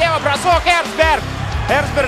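A man's excited sports commentary in Russian over backing music.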